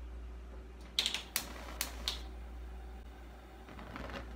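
A burner is switched on under a small pot of water, with a run of sharp clicks from the stove controls about a second in and a few single clicks after. A steady low hum runs underneath.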